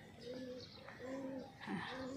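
A dove cooing: phrases of short, low, flat-pitched coos repeating about once a second. A woman's brief spoken 'aa' comes near the end.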